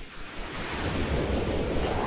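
Synthesized whoosh sound effect for an animated logo: a swelling rush of noise over a low rumble, with a sweep that rises in pitch from about halfway through.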